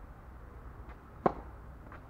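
Tennis racket striking the ball on a serve: one sharp pop about a second in.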